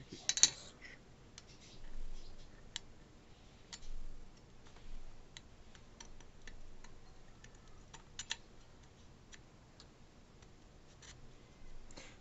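Light metallic clicks and clinks of small steel engine parts being handled: rocker arms fitted by hand onto the rocker shaft of a small stationary engine's cylinder head. A sharper clatter comes about half a second in, then scattered single clicks.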